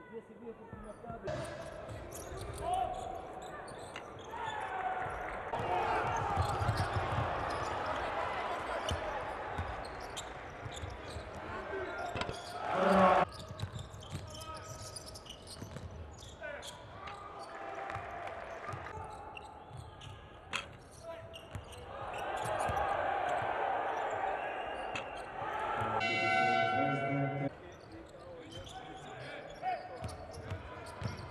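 Basketball game sound in an arena hall: a ball bouncing on the hardwood court amid general crowd noise, with a loud thump about halfway through. Near the end, a short steady tone sounds for a second or so.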